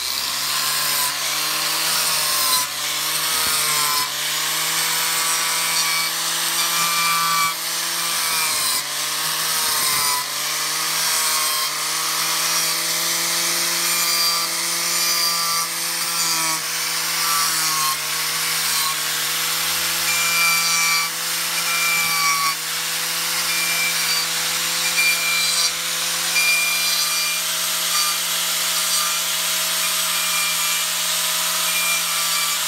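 Makita angle grinder fitted with a King Arthur Lancelot chainsaw-tooth carving disc, running and cutting into wood as it scallops out the back of a wooden leaf. The motor tone dips briefly several times in the first ten seconds as the disc bites in under load, then holds steadier.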